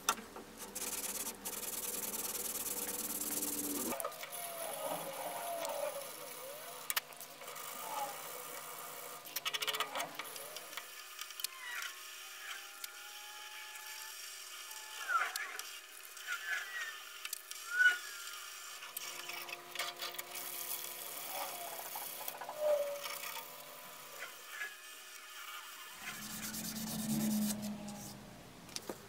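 A hand rubbing over a wooden knife handle in soft, irregular strokes, with a few faint squeaks and clicks.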